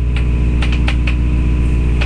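A steady low hum, with a few short clicks in the first second.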